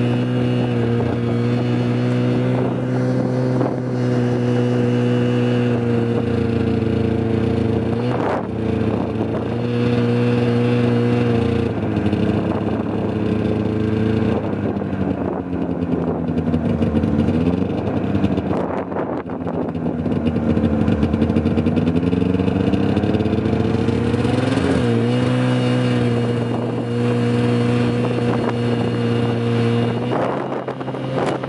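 A motor vehicle's engine running steadily, its pitch sagging and picking up again twice in the middle stretch as it slows and speeds up, with wind rushing over the microphone.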